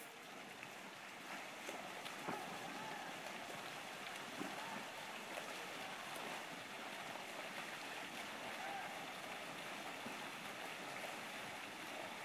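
Faint, steady splashing of open-water swimmers' strokes on a river, with a few small faint knocks.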